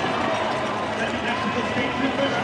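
Stadium crowd chatter: many voices talking at once at a steady level, with no clear single talker.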